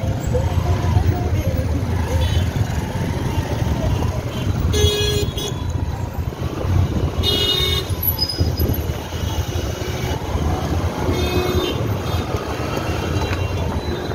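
Motorbike engine running and the steady rumble of slow, dense city traffic, with three short vehicle-horn toots about five, seven and eleven seconds in, the middle one the loudest.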